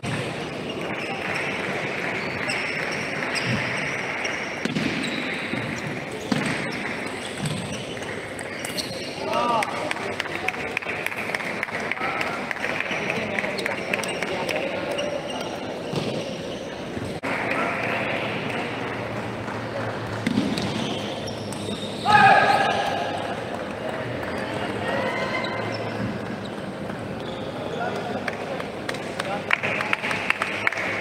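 Table tennis balls clicking on tables and bats, over a steady hubbub of voices in a large sports hall. A loud voice stands out around twenty-two seconds in, and a quick run of ball clicks comes near the end.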